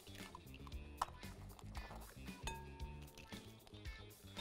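Faint background music with a few short, sharp cracks and wet drops as raw eggs are cracked open and dropped into a glass mixing bowl.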